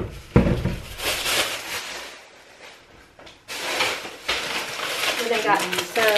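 Plastic grocery bag rustling and crinkling in two spells as items are rummaged out of it, after a single knock of something being set down just after the start. A voice starts near the end.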